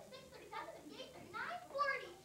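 A young actor speaking lines on stage, heard from the audience seating.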